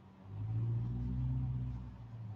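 Mail delivery vehicle's engine, a low steady rumble that comes in about a quarter second in and holds.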